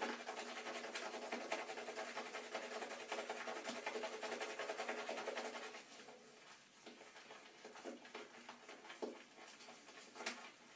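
Shaving brush whisking soap into lather in a shaving bowl: fast, wet, crackly swirling strokes for about six seconds, then quieter, slower strokes with scattered clicks.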